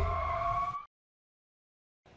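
Intro logo sound effect: a deep rumble under a pitched, engine-like tone that steps up in pitch, cutting off sharply under a second in, then dead silence.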